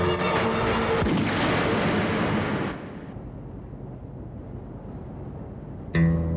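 A gunshot film sound effect: a loud bang about a second in with a long rushing tail that dies away by about three seconds, over dramatic background music.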